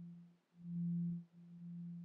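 A low, steady humming drone tone with a faint overtone, swelling and fading in slow pulses about a second long, with brief dips between them.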